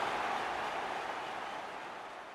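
A steady rushing noise, with no tone or beat in it, fading out gradually: the tail of the outro sound effect closing the podcast.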